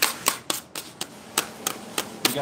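Metal bench scrapers clacking against each other and the steel table while working a slab of hot candy: a run of sharp, irregular clicks, about three or four a second.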